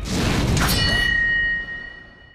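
Sound effect: a rushing whoosh, then under a second in a bright metallic ding whose ringing tone holds and fades away near the end.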